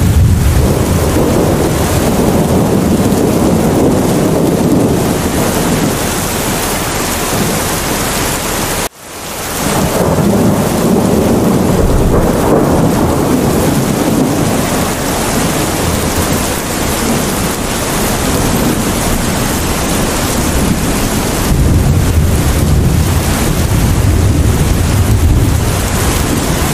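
Heavy rain falling steadily, with rolling thunder rumbling near the start and again near the end. About nine seconds in, the sound cuts out abruptly and swells back in.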